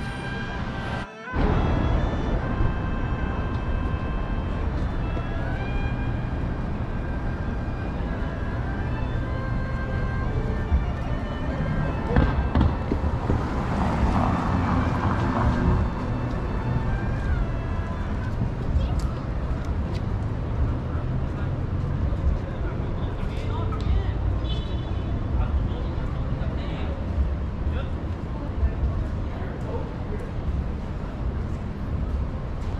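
City street ambience: a steady low rumble of traffic under passers-by's voices, with music playing from shops through the first half. The sound cuts out briefly about a second in.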